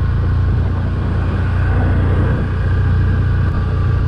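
Can-Am Outlander Max 1000 XTP quad's V-twin engine running steadily at cruising speed, with a low, steady rumble of wind and gravel-track noise on a helmet-mounted camera microphone.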